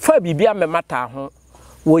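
A person speaking in Akan (Twi), with a short pause after about a second before talking resumes near the end. A faint steady high-pitched tone runs underneath.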